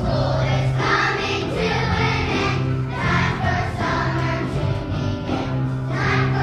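Children's choir singing together with instrumental accompaniment, over a steady bass line.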